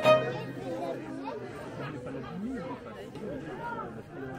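A violin music phrase ends right at the start, then several people talk together, indistinct chatter at a moderate level.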